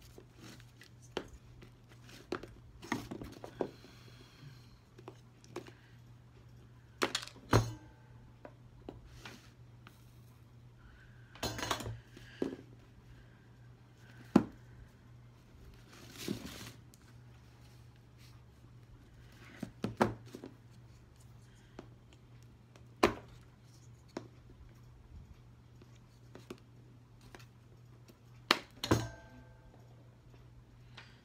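Scattered clicks, taps and light crinkling from a thin lead hobby came strip being pressed and worked by hand around the edge of a stained glass piece, with the glass and tools knocking now and then on the work board. A faint steady low hum runs underneath.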